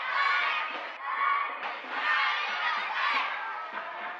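A group of young martial arts students shouting together in loud, chant-like cries, with a short break about a second in.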